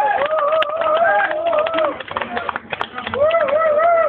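A person's voice held in long, wavering high notes, called or sung out at a live rock show, with short breaks between phrases.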